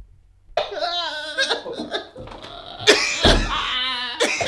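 A man sobbing and wailing in wavering, broken cries, mixed with laughter.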